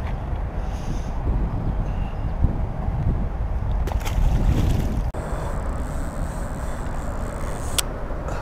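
Wind buffeting the microphone on a windy riverbank, a steady low rumble, with a few sharp clicks about four, five and eight seconds in.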